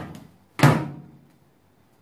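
A single loud thunk from the Panasonic microwave oven about half a second in, with a short ringing tail, as the child handles its control dials.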